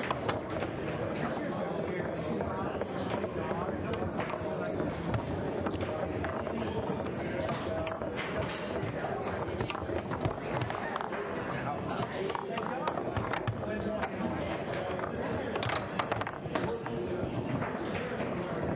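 Foosball in play: the ball and rods knock and clack against the table's men and walls in short sharp clicks, over a steady background of crowd chatter.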